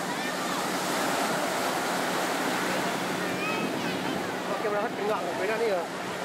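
Ocean surf breaking and washing in shallow water, a steady rushing wash, with people's voices calling out in the second half.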